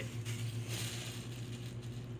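Packaging rustling as it is handled for about a second, over a steady low hum.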